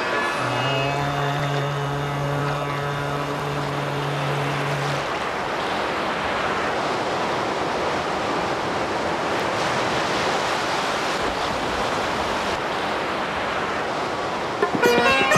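Ocean surf washing in steadily, a continuous rushing noise of waves. A held low musical drone note fades out about five seconds in.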